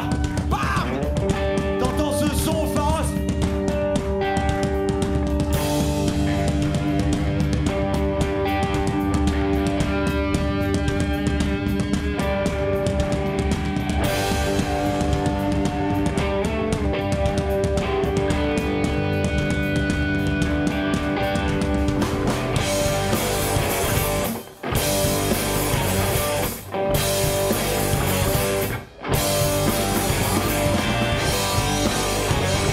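Live rock band playing without vocals: electric guitars, bass and drum kit. About 22 s in the playing turns denser and noisier, and near the end the band stops dead for a split second three times.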